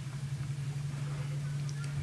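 A steady low hum with a faint background hiss.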